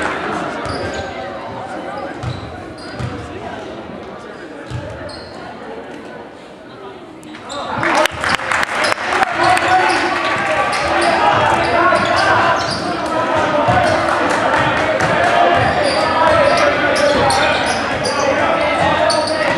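Gymnasium crowd voices and a basketball bouncing on a hardwood court, with the ball's knocks echoing in the hall. About eight seconds in the crowd noise jumps up suddenly and stays loud, with quick sharp knocks through it.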